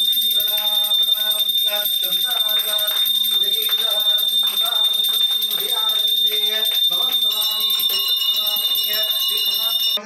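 A brass puja hand bell rung continuously, a steady high ringing, over a man's mantra chanting; about seven seconds in the ringing takes on additional tones.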